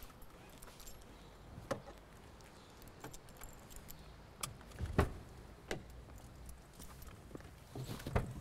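Car keys jangling with a few sharp clicks and knocks, the loudest about five seconds in, over a quiet street background.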